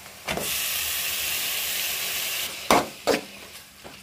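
Chopped tomatoes dropped into hot oil with frying onions and green chillies: a loud sizzle flares up just after the start and stops after about two seconds. Two sharp knocks follow, about half a second apart.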